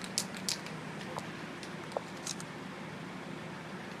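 Quiet steady night-street background noise picked up by a handheld phone, with a few light clicks from the phone being handled in the first half-second and two faint short blips later on.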